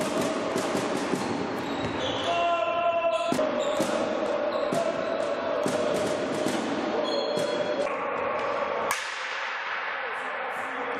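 Indoor hockey play in a sports hall: repeated sharp clacks of sticks hitting the ball and the ball knocking against the sideboards, echoing in the hall. A louder knock comes near the end. Underneath runs a steady background of crowd and player voices with a held tone.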